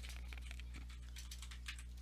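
Typing on a computer keyboard: a quick, irregular run of light key clicks over a steady low hum.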